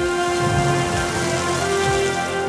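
Meat sizzling hard on a flaming griddle, a dense rain-like hiss that sets in suddenly and fades near the end, over background music.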